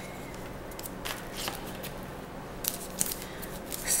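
Soft rustling of a wrapped soap bar's paper and plastic wrapping being handled, with scattered small clicks, a cluster about a second in and more near the end.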